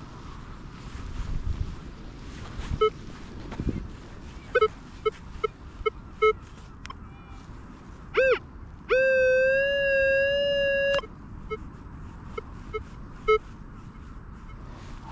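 Minelab Vanquish 540 metal detector giving a string of short beeps as the coil is swept, then a brief tone that bends up and down and a steady tone held for about two seconds, followed by more short beeps. Wind rumbles on the microphone in the first few seconds.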